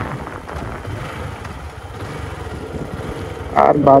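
Motorcycle riding along, with wind rushing over the microphone and engine and road noise underneath as a steady, even rush. A man's voice starts near the end.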